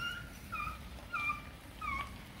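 An animal giving four short, high calls, about one every 0.6 seconds, each dipping slightly in pitch at its end.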